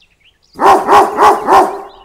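A dog barking four times in quick succession, loud and evenly spaced.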